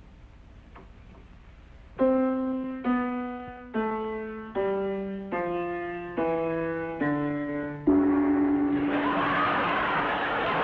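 A piano being tuned, played one note at a time: eight struck notes, each ringing and dying away, stepping down in pitch. Near the end a loud burst of studio-audience laughter sets in.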